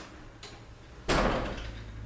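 A door banging once, off-screen, about a second in, a sudden loud knock that dies away over about half a second.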